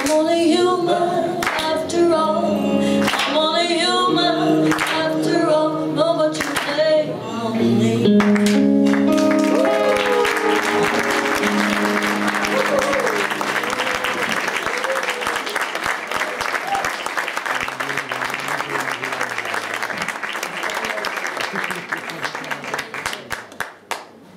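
A live acoustic band finishing a song: singing over acoustic guitar and bass with handclaps, ending on held notes. About nine seconds in, the audience starts applauding and cheering, and this runs on until it dies away just before the end.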